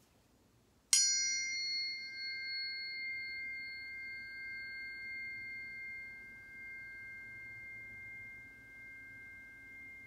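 Tuning forks struck about a second in, with a bright clang at the strike, then ringing on as two steady high tones that fade slowly.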